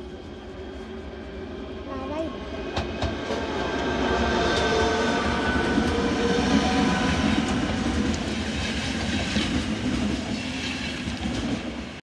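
Double-deck electric passenger train approaching and passing close by. Its running noise grows over the first few seconds and stays loud while the cars go past, with a few sharp clicks about three seconds in.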